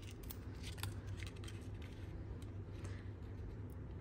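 Faint handling of paper and cardstock: light rustling and scattered small clicks as a paper tag is moved about and positioned on a card, over a low steady hum.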